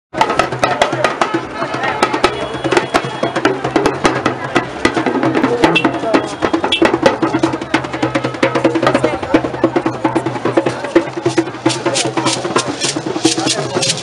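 Live Yoruba drumming in a street procession: rapid, sharp drum strokes with crowd voices over them. Near the end the strokes settle into an even beat of about four a second.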